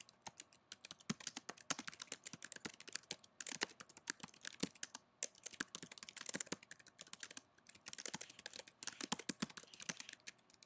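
Typing on a computer keyboard: quick, irregular runs of key clicks with a few brief pauses.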